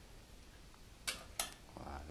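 Two short clinks about a third of a second apart, a little past a second in, as a glass jar of morello cherries is tipped and shaken out into a metal sieve over a steel bowl. Otherwise quiet.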